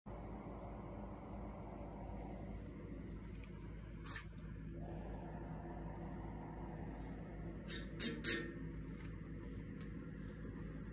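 Steady low hum of workshop room tone, with a faint click about four seconds in and a quick pair of sharp clicks or taps near the eight-second mark, the loudest sounds here.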